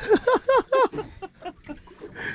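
A man laughing: about four short falling 'ha' notes in quick succession in the first second, trailing off into fainter ones.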